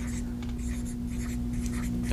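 Dry-erase marker writing on a whiteboard: a quick run of short, irregular scratchy strokes as a word is written by hand, over a faint steady hum.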